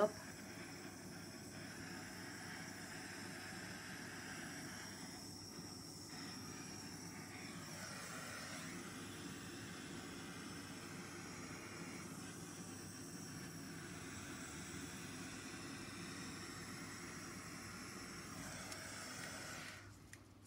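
Handheld butane torch flame running with a steady hiss as it is passed over wet acrylic pour paint to bring cells up to the surface. It stops right at the end.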